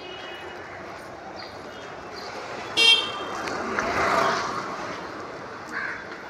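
A vehicle horn gives one short, high toot about three seconds in, over steady street traffic noise that swells briefly a second later.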